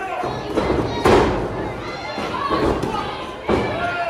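Several heavy thuds of wrestlers' bodies landing on a wrestling ring's canvas-covered floor, the loudest about a second in and another sharp one near the end.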